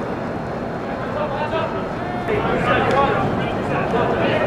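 Indistinct background voices, with faint talk coming and going, over a steady noise.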